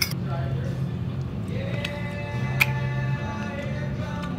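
Restaurant background music with held notes over a murmur of voices, and one light click about two and a half seconds in.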